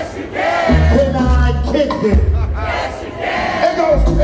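Hip hop music with a heavy bass beat playing loud over a club sound system, with shouting voices over the track.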